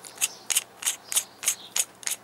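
Metal threads of a vape mod's aluminium battery tube being twisted by hand, giving a row of small sharp clicks, about three or four a second.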